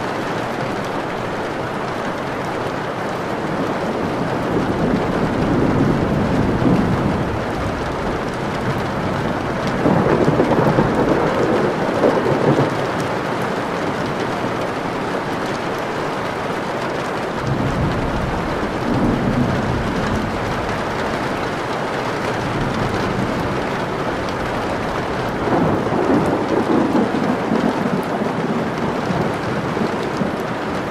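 Steady rain heard from indoors, with rolls of thunder rumbling four times, several seconds apart.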